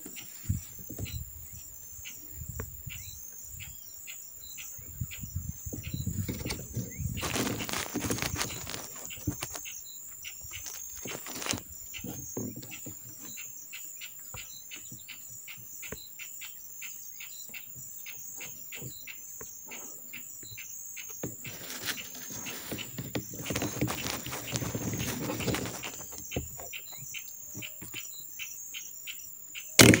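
Insects chirping in a steady, even pulse, with two longer spells of rustling noise. Near the end comes a single sharp rifle shot, the loudest sound, fired at a perched pigeon.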